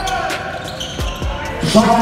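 A basketball bouncing on a hardwood court, several low thuds, with players' voices calling out on the court.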